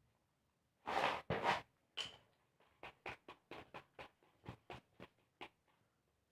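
Handmade cardboard battle tops knocking and scraping on a paper arena as they run down. There are two louder scraping bursts about a second in, then a string of light taps that fade out by about five and a half seconds as the tops wobble and stop.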